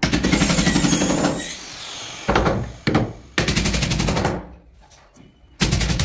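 A power tool rattling in rapid impacts, in several bursts of about half a second to a second and a half with short pauses between.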